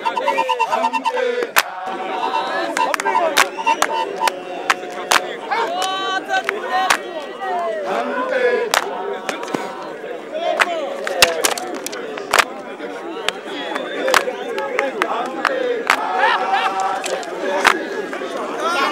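Wooden fighting sticks clacking against each other and against hide shields in sharp, irregular strikes during a stick fight. Underneath, a crowd keeps up shouting and cheering.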